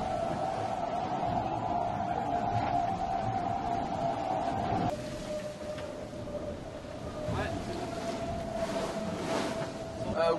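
Steady whining hum with rushing water noise inside the hull of an IMOCA 60 racing yacht under sail; the hum drops slightly in pitch about halfway through, and a few faint knocks come near the end.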